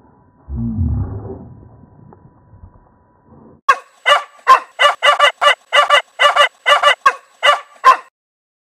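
A dog barking in a quick, even series of about a dozen sharp barks, starting about four seconds in and cutting off abruptly. Before the barks, a low rumble about half a second in.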